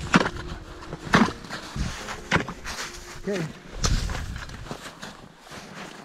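An ice chisel (spud bar) being jabbed down into ice, giving sharp chopping strikes about a second apart.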